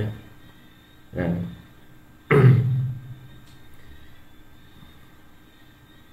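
Two short bursts of a person's voice, about a second and about two and a half seconds in, the second louder, between them and after them only a faint steady hum.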